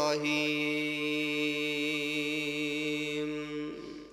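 A man's voice in melodic Quran recitation, coming out of an ornamented run into one long, steady held note that stops about three and a half seconds in.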